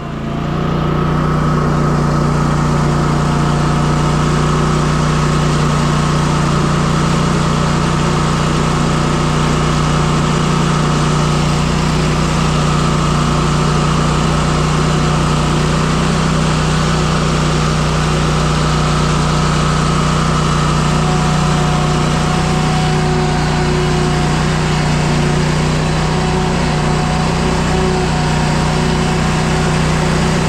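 Stand-on commercial mower's engine running steadily as the mower is driven across the lawn, a loud, even hum with no change in pitch.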